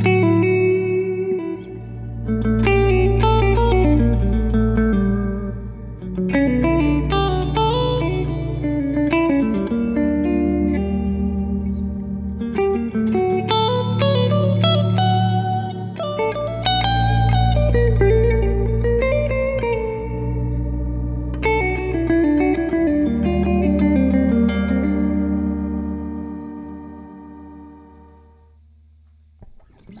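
Electric guitar and electric bass playing an instrumental country tune. The guitar plays melodic runs with bent notes over long, held bass notes. The playing fades away near the end.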